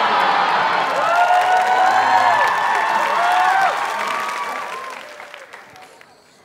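Studio audience applauding, with voices cheering among the clapping; it dies away over the last two seconds.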